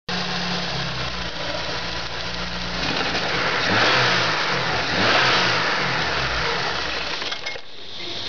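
Engine running, revved up briefly twice in the middle and settling back. Its ignition advance has been raised in MegaSquirt without turning the distributor back, so the spark crosses over inside the distributor cap to the cylinder before it in the firing order.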